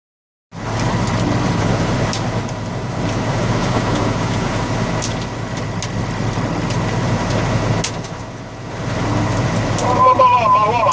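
Tractor engine running steadily, heard from inside its cab, with rain and hail hitting the cab and a few sharp clicks; the drone eases briefly shortly before the end.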